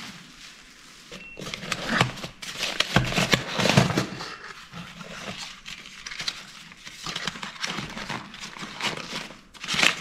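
Bubble wrap and crumpled paper packing rustling and crinkling as hands dig through a plastic barrel to lift out a wine glass. It comes in irregular handling bursts, loudest between about one and four seconds in.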